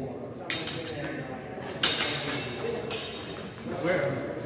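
Steel longswords clashing in sparring: three sharp metallic strikes with a brief ring after each, the loudest about two seconds in.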